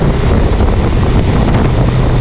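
Heavy wind buffeting the microphone on a motorcycle riding at road speed, with the low drone of the Honda Gold Wing's flat-six engine underneath. The steady low engine hum comes through more plainly about one and a half seconds in.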